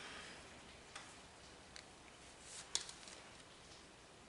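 Quiet room tone with a few faint, light clicks from small makeup items being handled, such as a hand mirror and a makeup sponge. The sharpest click comes a little past the middle.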